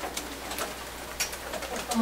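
Steady room hiss with a few faint clicks.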